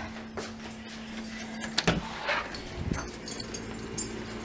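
A sliding patio door being handled and slid open: clicks, rattles and a metallic jangle, with one sharp knock a little under two seconds in.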